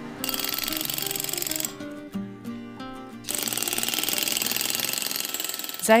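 Stonemason's pneumatic carving hammer chiselling stone: a very fast, even rattle in two bursts, the second longer, with background music underneath.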